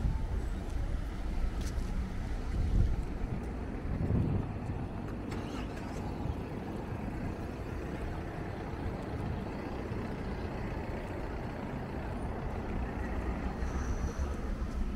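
Street traffic: cars driving past close by, a steady low rumble with two louder passes about three and four seconds in.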